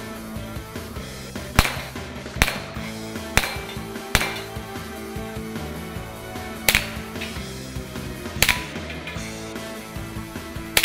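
Six sharp gunshots at uneven intervals, with steady background music underneath.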